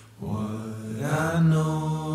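A solo voice, nearly unaccompanied, sings the closing phrase of a folk song. It rises and then holds one long, steady note.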